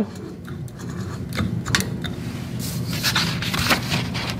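Sheets of paper being handled and turned over, rustling with several sharp clicks and scrapes, over a steady low electrical hum.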